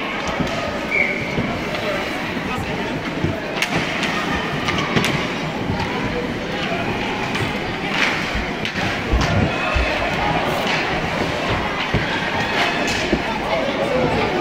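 Ice hockey play in an indoor rink: scattered sharp knocks of sticks and puck, some louder slams against the boards, over indistinct voices of players and spectators.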